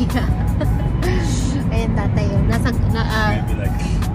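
Steady low road and engine rumble inside a moving car's cabin, with music and voices over it.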